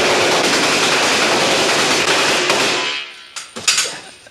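Sustained burst of rapid machine-gun fire with blanks from a played-back TV commercial soundtrack, lasting about three seconds and then fading out.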